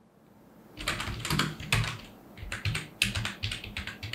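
Computer keyboard keys clicking in a fast, irregular run of keystrokes that starts about a second in, as a line of text is typed.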